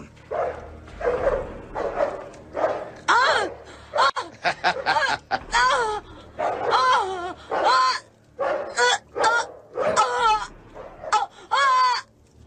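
A dog barking and whining in a string of short calls, many rising and falling in pitch, with brief gaps between them.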